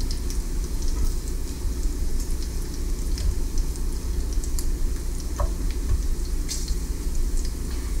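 Bacon sizzling in hot grease in an electric skillet, with scattered crackles and pops and a few light clicks as the pieces are turned, over a steady low hum.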